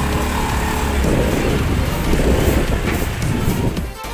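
Vehicle rumble and wind buffeting the microphone while riding, growing rougher about a second in, with background music over it.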